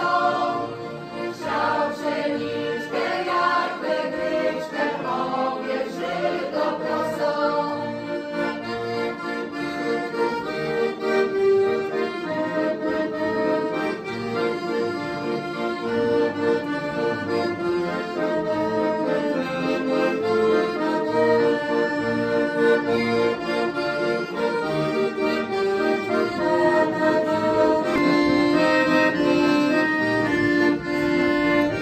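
Piano accordion playing a traditional carol tune in steady held chords, with a women's folk choir singing over it for the first several seconds.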